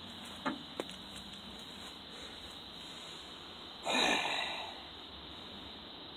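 A man's breathy groan, "uh", about four seconds in, the loudest sound here, over a steady faint background hiss. Two light clicks come in the first second.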